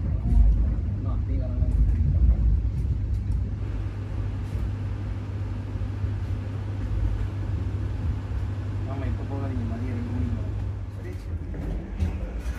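Steady low rumble and hum inside a Vande Bharat electric train's chair-car coach, with indistinct voices in the background.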